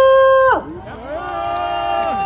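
A woman's amplified voice drawing words out into long held calls: one steady note that breaks off about half a second in, then after a short gap another call that rises and holds at a steady, higher pitch.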